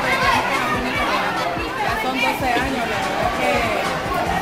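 A woman talking over the chatter of a crowded hall, with music playing in the background.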